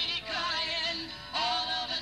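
A male vocalist singing into a microphone over backing music, sliding into a long held note about one and a half seconds in.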